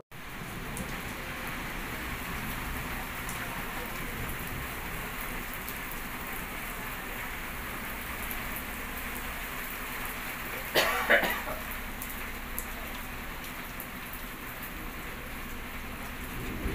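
Steady rain falling on a dirt road and the surfaces around it, an even hiss throughout. A brief louder sound breaks in about eleven seconds in.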